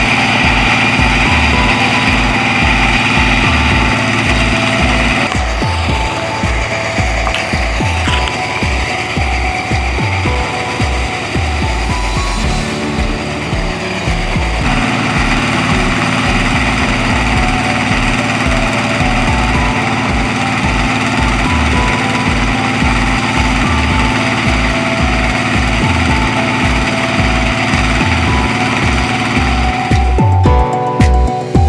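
Small engine running a forage chopper that is cutting maize stalks for silage, with a steady, even throb.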